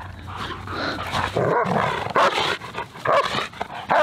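Two German Shepherds vocalizing in short, repeated calls while playing together, several times across the few seconds.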